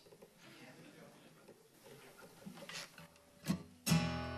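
Acoustic guitar: a quiet room for most of the time, a short sharp sound about three and a half seconds in, then a chord struck just before the end and left ringing.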